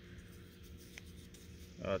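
Fingers rubbing on the wrapped tube of a mini canister firework shell as it is turned in the hand, faint, with one light click about halfway.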